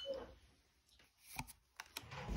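Duel Masters trading cards being handled, one card at a time slid from the front of a hand-held stack to the back, giving a few faint, sharp clicks and taps of card on card.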